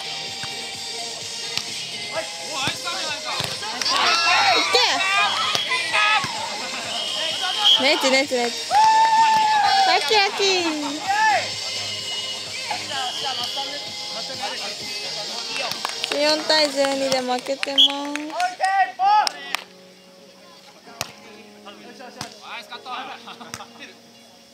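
Players' voices shouting and calling out to one another during a game, some calls drawn out long; the shouting dies down about twenty seconds in, leaving a few faint voices and sharp taps.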